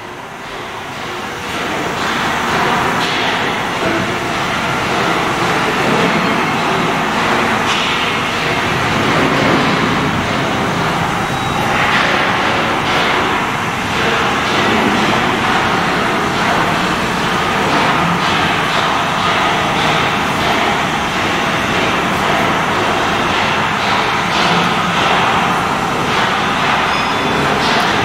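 Loud, steady diesel machinery noise in a dredger's engine room, coming up over the first couple of seconds and then holding even.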